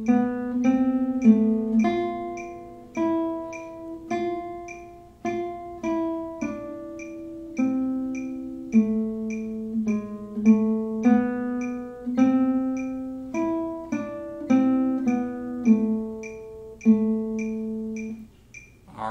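Classical guitar playing a slow single-line melody, one plucked note at a time in quarter and eighth notes, against steady metronome clicks. The four-bar phrase ends on a held low A.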